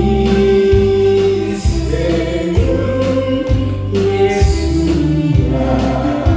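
Man singing a Korean song into a microphone over a karaoke backing track with a steady bass beat.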